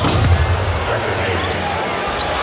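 Basketball game sound in an arena: steady crowd noise with a basketball bouncing on the hardwood court.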